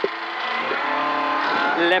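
Ford Escort rally car's engine heard from inside the cabin, pulling under power along a straight and holding a steady pitch for over a second before the co-driver's voice returns near the end.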